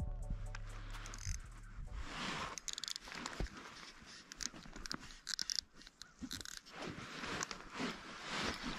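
Background music fading out in the first two seconds, then faint, irregular crunching and rustling of snow and clothing close to the microphone, with scattered small clicks.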